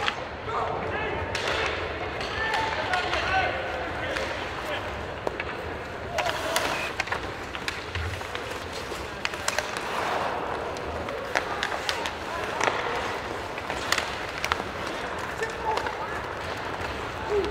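Live ice hockey game: indistinct shouts from players and the arena over a steady rink ambience, with frequent sharp clicks and knocks from sticks and puck.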